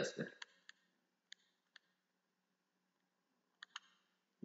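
Faint, sharp clicks, a few scattered through the first two seconds and two more close together near the end: a stylus tapping a pen tablet while writing on screen.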